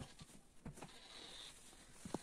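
Near silence: room tone, with a few faint taps and a brief faint high squeak in the middle.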